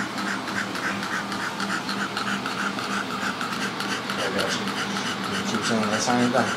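Micro exotic bully dog panting in a fast, even rhythm, over a low steady hum.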